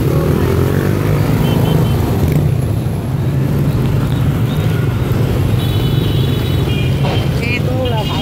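Street traffic: motorbike engines running past in a steady low rumble, with a vehicle passing in the first second. High steady tones sound over it near the end.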